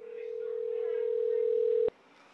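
Telephone ringback tone heard through a phone: one steady ring of about two seconds, the call ringing at the other end, cut off suddenly with a click.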